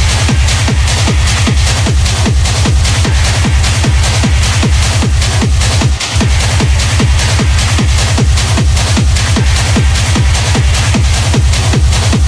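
Hard techno DJ mix: a loud, fast four-on-the-floor kick drum under a dense high-end layer, the bass cutting out for a moment about halfway through.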